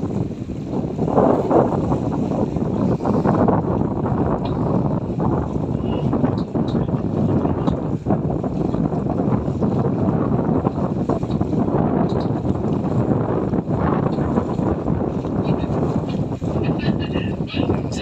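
Steady wind rushing over the microphone aboard a ship under way at sea, a dense rush with no clear engine beat.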